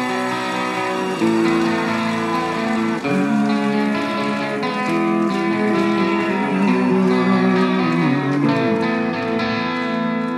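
Live band music: an electric guitar plays a slow melodic line of long held notes, with one note bent about eight seconds in.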